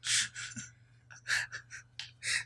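A man's breathless, near-silent laughter: four short wheezing gasps with no voice in them, the first the loudest.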